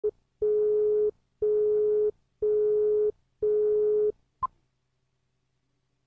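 Electronic beep tone sounding four times, one steady low pitch held for about two-thirds of a second and repeating once a second, then one short higher blip.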